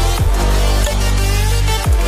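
Electronic background music with a heavy bass line and a steady beat; deep bass notes slide downward twice, near the start and near the end.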